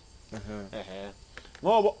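A man speaking, in two short phrases with a pause between them.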